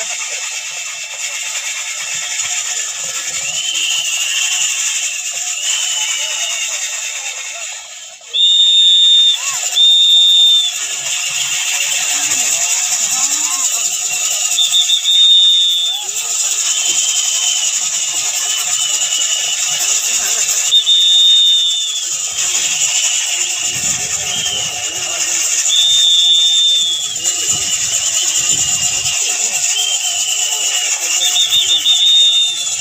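Old bullock-driven kharas flour mill turning over the murmur of a watching crowd. A high, steady whistle-like squeal comes in short pairs every five or six seconds.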